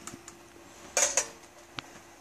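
A brief light metallic clatter about a second in and a single sharp tick near the end, from the galvanized sheet-steel amplifier top being handled, over a faint steady hum.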